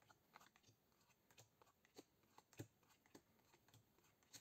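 Near silence with a few faint, irregular soft taps of Bicycle playing cards being dealt one at a time onto a table, alternately face-down and face-up.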